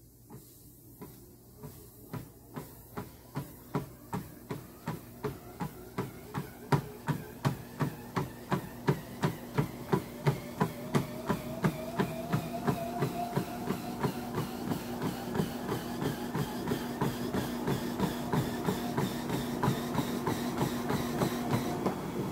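Treadmill speeding up under a runner: footfalls on the belt grow louder and quicken from walking steps to nearly three running strides a second. The motor's whine rises in pitch as the belt gathers speed.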